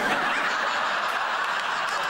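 Sitcom studio audience laughing, breaking out all at once and holding steady.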